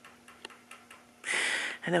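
A woman's sharp sniff, about half a second long, just over a second in, as she holds back tears; a few faint clicks before it.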